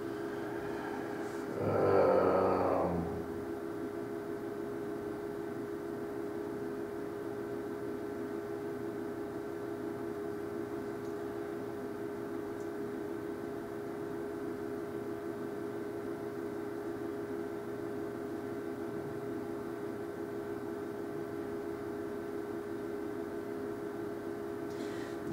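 Steady electrical hum with low background noise, broken about a second and a half in by a brief wordless vocal sound from a man, lasting about two seconds.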